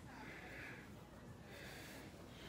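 Faint breaths close to the microphone: soft hissy puffs, one through most of the first second and another near the end, over a low room hum.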